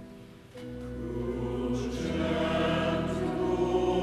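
Church choir singing a hymn with sustained keyboard accompaniment. After a brief pause, the accompaniment comes back in about half a second in, the voices enter about a second in, and the singing grows louder.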